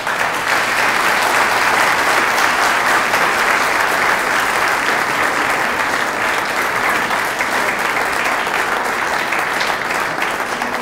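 An audience applauding steadily, a dense even clatter of many hands that begins suddenly and eases slightly near the end.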